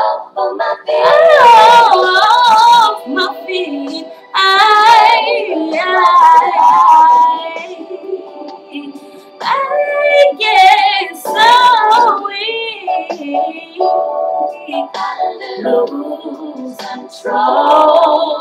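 A girl singing R&B-style runs, long drawn-out phrases with wavering, ornamented pitch, in several loud bursts that grow softer toward the end.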